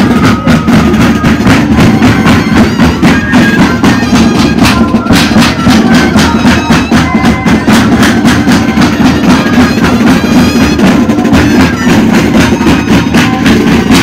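Live moseñada band: moseño cane flutes holding a breathy, droning melody over a steady beat on large drums.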